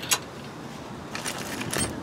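Light metallic clicks of a steel lock washer being fitted by hand onto a bolt at a brush guard bracket: one click just after the start, then a few light clinks from about a second in.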